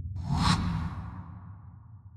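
A whoosh transition sound effect: a sudden rush of hiss that peaks about half a second in and then fades away over the next second, over a low bass fading out.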